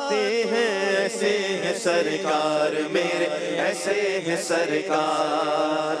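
Voices chanting an Urdu naat: a sustained, layered vocal drone under a wavering, melodic line, with no spoken words.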